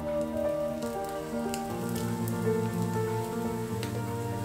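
A breadcrumb-coated Monte Cristo sandwich frying in butter in a pan: a soft sizzle with a few sharp crackles. Background music with sustained, slowly changing notes plays over it.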